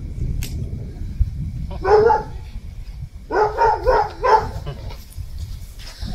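A dog barking: one bark about two seconds in, then four quick barks a second later, over a steady low rumble.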